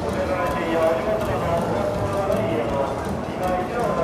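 Hard-soled footsteps clicking on a tiled station platform as passengers walk past, over a steady murmur of background voices.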